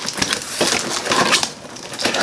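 Clear plastic wrapping crinkling and crackling as it is pulled and torn off a cardboard box, with the cardboard rustling under the hands.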